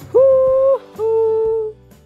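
Two long hooting notes over quiet background music. The first is higher and slides up into its pitch; the second, a little lower, follows after a short gap.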